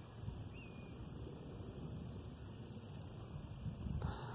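Faint wind buffeting the microphone outdoors, an irregular low rumble with no other clear sound.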